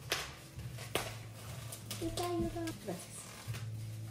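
Plastic wrapping on a block of dry floral foam crinkling as it is handled, with a couple of sharp crackles in the first second. A child's voice speaks briefly about halfway through.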